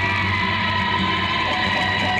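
Electric guitar amplifiers droning in a lull of a live rock set: a steady high feedback whine over a low hum.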